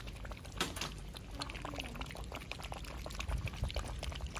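Several Shih Tzu puppies lapping liquid from a shallow stainless steel tray: a rapid, overlapping run of wet laps and clicks.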